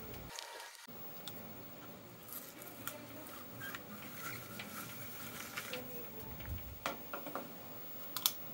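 Faint rustling and scattered light clicks of a flexible plastic nursery pot being worked off a plant's root ball, with soil and leaves shifting, and a couple of soft knocks near the end.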